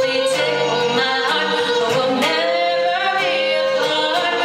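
A live vocal duet: a woman holding long sung notes with a man singing a lower harmony, over a strummed acoustic guitar.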